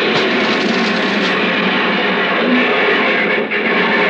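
Radio-drama train-wreck sequence: a loud, dense dramatic music cue blended with crash sound effects, making one continuous din at a steady level.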